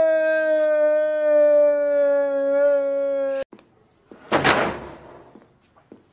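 A long, steady held cry from a man's voice, sinking slightly in pitch, that cuts off abruptly about three and a half seconds in. Shortly after, a wooden interior door is pushed shut with a single slam.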